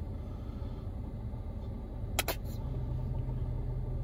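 Steady low rumble of a car heard from inside its cabin, with two short sharp clicks a little past halfway, while sauce is squeezed from a plastic squeeze bottle.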